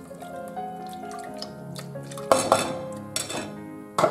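Water poured from a steel tumbler into a pot of curry, with a loud splashing pour about two seconds in and clinks of steel against the pot. Background music plays underneath.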